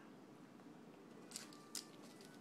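Near silence, with two faint, short rustles of plastic craft-supply packaging being handled about one and a half seconds in.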